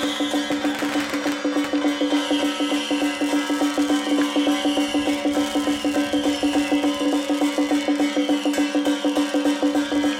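Song Jiang battle array percussion accompaniment: drum and gongs beaten in a fast, even rhythm of about four to five strokes a second, over a steady ringing tone.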